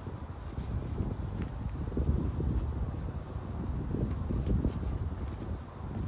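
Wind buffeting the camera microphone: an uneven low rumble that swells and eases, with a few faint clicks.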